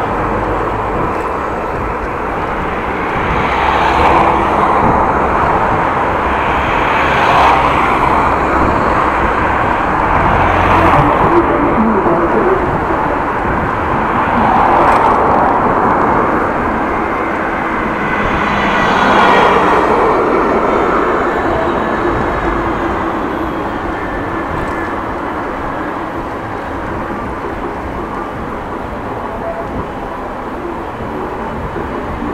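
City road traffic heard from a moving bicycle: cars and vans passing one after another, each swelling and fading, over a steady rush of riding noise.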